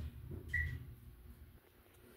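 A Dover hydraulic elevator's chime: one short, clear high ding about half a second in, over the low hum of the moving car.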